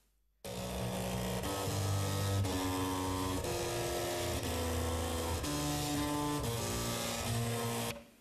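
A tune played on floppy disk drives, their head stepper motors buzzing out a melody of held notes that change pitch every half second or so. It starts about half a second in and stops abruptly near the end.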